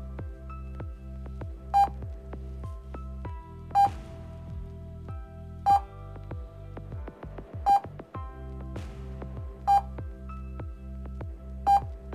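Short electronic beep from a mental-arithmetic drill program, repeating about every two seconds, six times, each beep marking the next number flashed for adding up. Steady background music plays under the beeps.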